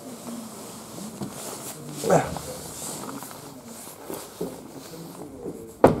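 Renault ZOE rear door shut once near the end, closing well with a single dull thud.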